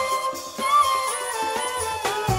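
Shakuhachi playing a jazz-funk melody: notes held near one pitch with quick small upward bends, stepping lower in the second half.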